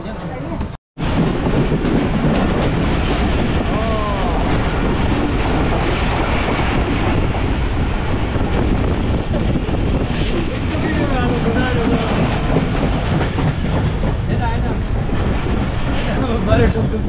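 Passenger train running at speed, heard from the open carriage doorway: a steady, loud rumble and rattle of the wheels on the track. There is a brief dropout just under a second in.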